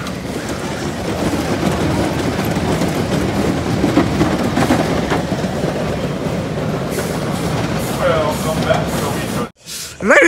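Racer 75 wooden roller coaster train rolling along the track toward the station: a steady rumble of wheels on the rails, with riders' voices faintly over it near the end. It stops abruptly just before the end.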